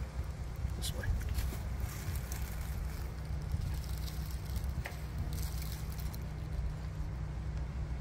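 Plastic beehive frame being lifted out and set back into a hive box: a few light clicks and rustles over a steady low rumble.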